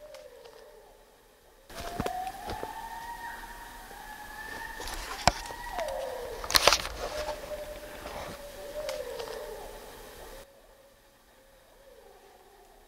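A long, drawn-out howling tone that rises, holds and falls away in pitch, in several overlapping calls. Two sharp clicks come near the middle.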